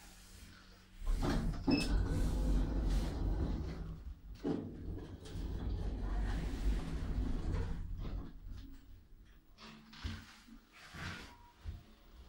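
W&W passenger elevator car in motion: a loud low rumble sets in about a second in, with a short high beep, and runs for about seven seconds before easing off. Near the end a few sharp clicks come as the car stops and its sliding doors begin to open.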